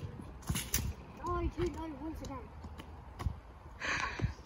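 A football kicked hard right at the start, one sharp knock. Then a few quieter knocks and faint children's voices, with a breathy noise near the end.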